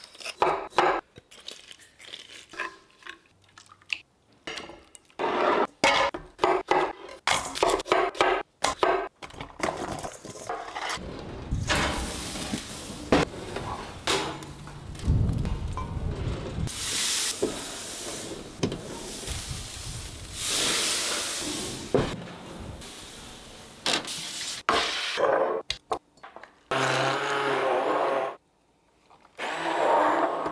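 A quick sequence of cooking sounds: the crunching grind of a pepper mill and a run of short scraping and knocking strokes, then food sizzling on a hot gas grill for about ten seconds, then a stick blender whirring through charred vegetables in two short runs near the end.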